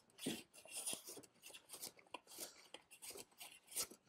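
A No. 5 jack hand plane cutting shavings from a glued-up cherry board, a faint run of short, uneven strokes as the surface is flattened.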